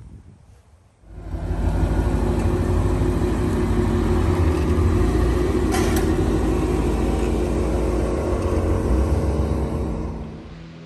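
1985 Corvette C4's tuned-port 350 V8 running steadily at low revs with a deep rumble as the car creeps forward, with a single sharp click about six seconds in. The engine sound comes in about a second in and fades near the end.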